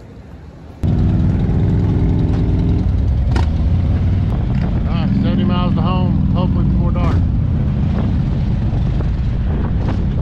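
Harley-Davidson V-twin motorcycle engines idling, loud and steady, coming in suddenly about a second in.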